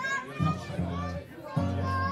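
Acoustic guitars being tuned: single low string notes plucked and left to ring, while a child's high voice calls out over them.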